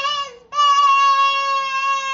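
A young child's voice holding one long high note at a steady pitch, sung out after a short opening syllable.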